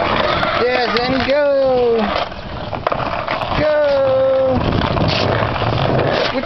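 Skateboard wheels rolling on concrete with a steady rough noise as a toddler rides and pushes the board, with two wordless calls from the child: a short falling one near the start and a longer held one about halfway through.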